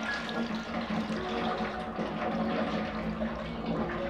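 Watery liquid pouring in a steady stream from a tilted aluminium saucepan into a steel bowl.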